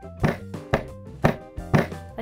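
Rubber mallet tapping the tapered steel pin of a ring stretcher, four light, even taps about two a second, driving the pin down into the slotted collet so that its splines expand and stretch the ring.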